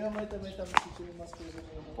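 Indistinct voices talking, with one sharp click about three-quarters of a second in.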